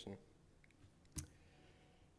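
Near silence of a lecture room with a single short click a little over a second in, the press of a key or button that advances the presentation slide.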